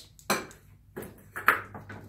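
A few sharp metallic clinks and knocks, each with a short ring, as a steel magnetic parts dish is set in a metal bench vise and clamped; the loudest comes about one and a half seconds in.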